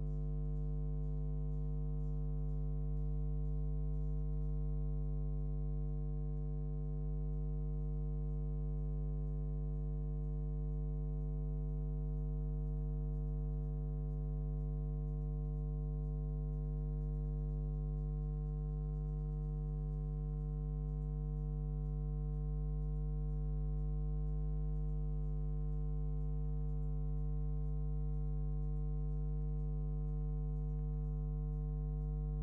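A steady electrical hum, a low tone with a stack of overtones above it, unchanging in pitch and level throughout.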